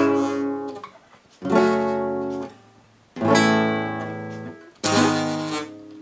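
Nylon-string classical guitar strumming four full chords, about one and a half seconds apart, each left to ring and fade before the next.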